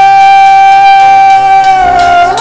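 A male singer holding one long high note at a steady pitch, which sags slightly just before the end, sung into the microphone in a live band performance.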